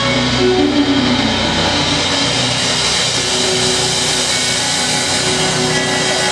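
Live blues band playing a loud, dense passage: a steady wash of sound with held chords beneath, heavily distorted on the recording.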